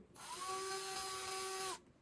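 An electric screwdriver runs once for about a second and a half with a steady whine, driving in a screw to tighten a part.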